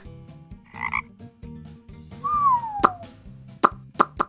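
Frog croaking sound effect, a low rhythmic croak, with a short falling whistle-like glide about halfway through and a few sharp pops near the end.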